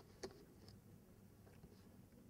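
Near silence: room tone, with one brief sharp click about a quarter second in.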